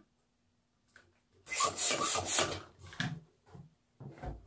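Latex balloons rubbing against each other as they are handled and twisted together. There is a loud, irregular stretch of rubbing about a second and a half in that lasts about a second, then two shorter rubs near the end.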